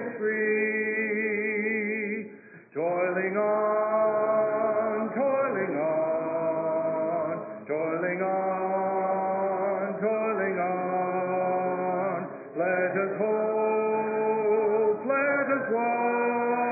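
Church congregation singing a hymn a cappella, led by a male song leader: long held notes in phrases of about five seconds, each broken by a short pause for breath.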